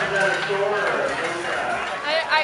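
People talking at close range, the words indistinct.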